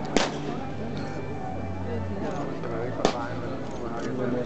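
Two sharp knocks from a ceremonial guard's rifle drill, one just after the start and one about three seconds in, over crowd chatter.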